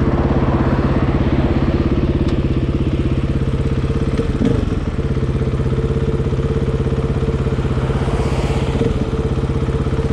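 KTM 450 EXC's single-cylinder four-stroke engine idling steadily with the bike standing still.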